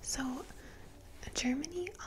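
A woman speaking softly and closely into a microphone, in two short phrases; speech only.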